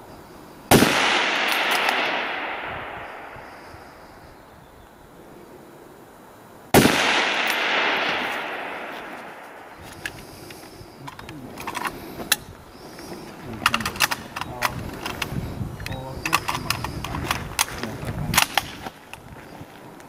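Two scoped precision rifle shots about six seconds apart, each a sharp crack followed by an echo rolling off over about three seconds. In the second half, a run of clicks and knocks as the rifle and gear are handled.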